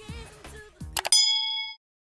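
Subscribe-button animation sound effects: a few soft clicks, then a single bright bell ding about a second in that rings for about half a second and cuts off abruptly.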